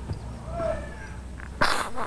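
A man weeping into a cloth: a faint, wavering whimper about half a second in, then a short, sharp sobbing breath near the end.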